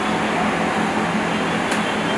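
A steady mechanical hum with a hiss, running evenly throughout.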